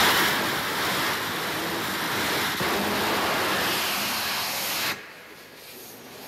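Hybrid rocket engine firing on a trailer-mounted static test stand: a loud, steady roar of rushing exhaust that cuts off suddenly about five seconds in, leaving a quieter hiss.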